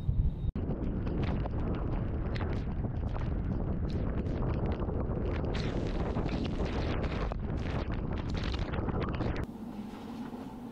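Gale-force wind blowing hard across the microphone: a loud, dense rush with many short gusts and buffets. Near the end it cuts off suddenly to a much quieter, even hiss.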